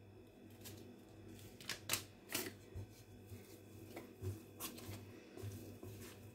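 Faint, irregular rustles and light clicks from a plastic yeast sachet being handled and dough being worked by hand in a glass bowl.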